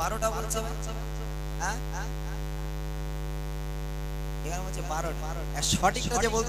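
Steady electrical mains hum through the microphone and sound system, with a few faint brief snatches of voice over it and a voice coming back in just before the end.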